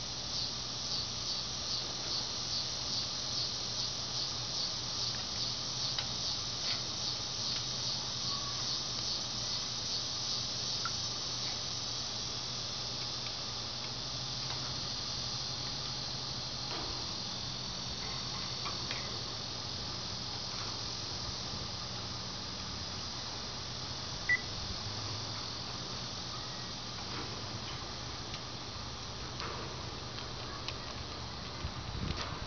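Outdoor insect chorus: a high-pitched pulsing trill, about two pulses a second, that evens out into a steady high drone after about twelve seconds. A single short, high chirp stands out once, about 24 seconds in.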